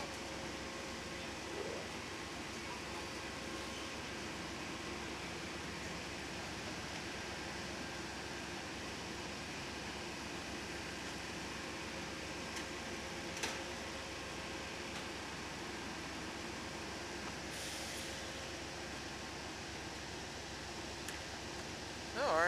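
Steady hum of a standing Amtrak passenger train idling at the platform, with a faint steady tone running through it. A single click about 13 seconds in and a brief hiss a few seconds later.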